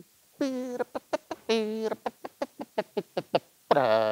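A man singing a musical phrase on wordless syllables, demonstrating how it should go. He holds two notes, then makes a run of short clipped sounds about five a second, and sings another held note near the end.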